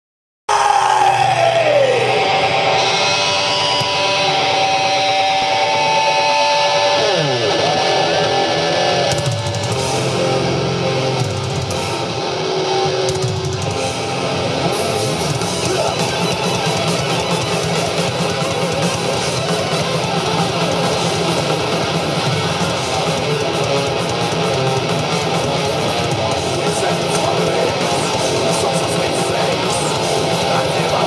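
Blackened thrash metal band playing live: distorted electric guitars, bass and drums. The sound cuts in abruptly, with sliding, falling pitches in the first seconds before the full band settles into a dense, steady wall of sound.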